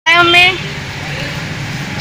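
Car engine running, heard from inside the cabin as a steady low hum, with a short spoken call over it at the start.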